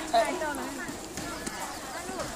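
A young woman laughing in a short loud burst just after the start, then quieter talk and market chatter.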